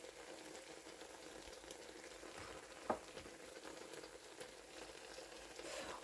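Faint steady sizzling of an egg omelette cooking in a non-stick frying pan on the hob, with a single light tap about three seconds in.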